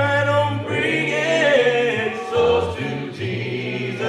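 Gospel song sung a cappella by a choir of voices with a man's lead voice, in long held notes over a steady low bass part.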